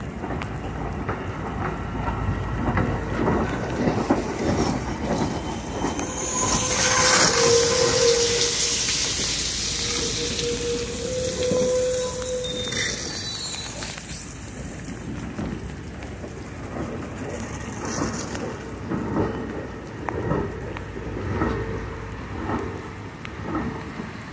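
Heavy rain mixed with the rumble and rolling clatter of Amtrak passenger cars passing close by. The rushing noise swells loudest from about 6 to 12 seconds in. A run of regular wheel knocks comes near the end.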